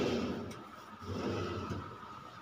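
A kitchen cabinet's pull-out wire basket drawer sliding on its runners, with a sharp click at the start. A second low, rough sliding run follows about a second in.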